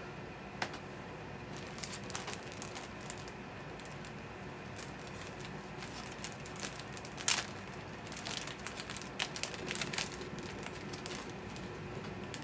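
Light rustling and scattered small clicks and taps of a plastic sleeve and paper sheets being handled on a wooden tabletop.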